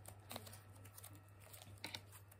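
Faint scattered pops and clicks from a clay-mixed slime being stretched by hand, the slime still popping as it stretches.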